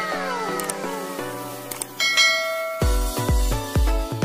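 Electronic background music: held notes with falling pitch sweeps, a bright chime about two seconds in, then a heavy bass beat at about two pulses a second starting near the end.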